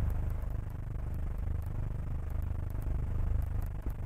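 Low, steady rumble of a vehicle engine idling, swelling slightly a little after three seconds in, with a few faint clicks.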